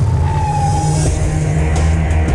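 Loud rock music from a film trailer soundtrack, with heavy bass and a single held high note in roughly its first second.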